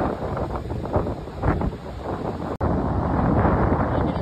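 Wind buffeting a phone's microphone, a steady rumbling noise strongest in the low end, broken by a split-second gap about two and a half seconds in.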